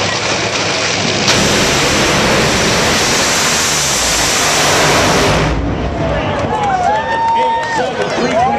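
Top fuel dragsters' supercharged nitromethane V8s at full power during a run, heard as a loud, distorted roar that swells about a second in and cuts off sharply after about five and a half seconds. Crowd noise and an amplified announcer's voice follow.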